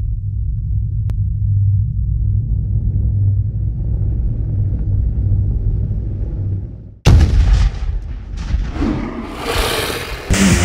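Cinematic intro sound effects: a low rumble swells for about seven seconds, cuts out for an instant, then a sudden loud boom hits, followed by a crackling, noisy tail.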